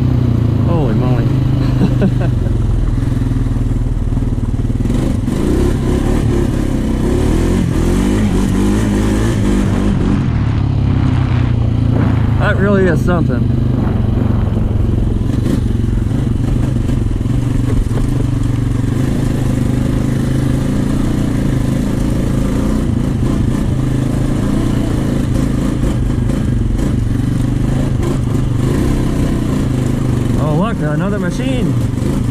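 Single-cylinder engine of a 2014 Honda Rancher 420 DCT four-wheeler running under way at a fairly steady pitch, with only small changes in throttle.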